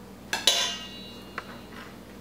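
Metal spoon knocking twice against a stainless steel mixing bowl, the bowl ringing on and fading over about a second, then one lighter tap.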